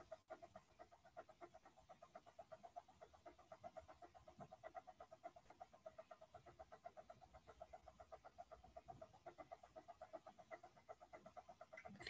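Near silence: faint room tone with a low hum pulsing about five times a second.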